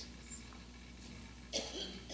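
A pause in speech with a steady low hum, and a brief cough-like sound from a person about one and a half seconds in.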